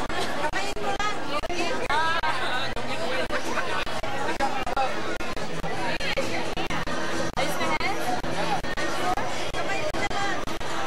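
Crowd chatter: many guests talking at once in a large room, overlapping voices with no single speaker standing out.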